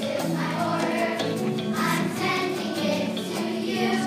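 Children's choir singing a song together, with instrumental accompaniment holding steady low notes underneath.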